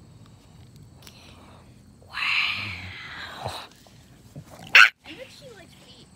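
Bulldog vocalizing: a drawn-out raspy sound about two seconds in, then one short, loud bark near five seconds in.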